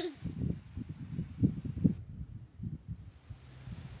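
Wind buffeting an outdoor microphone: an uneven low rumble with a faint hiss, easing off in the last second.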